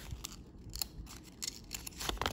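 Small paper instruction leaflet being folded and handled between the fingers: a series of quiet, short paper crinkles and clicks.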